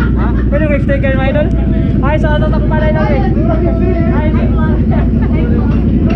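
A motorcycle engine idling, a steady low rumble under people's chatter and greetings.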